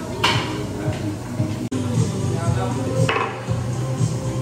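Large game pieces clattering: two sharp clacks about three seconds apart, over background music.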